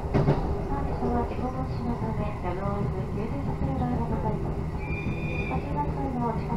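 Electric train running along the Ou Main Line, heard from inside the carriage: a steady rumble of wheels on rail. Indistinct voices are heard in the car, and a brief high tone comes near the end.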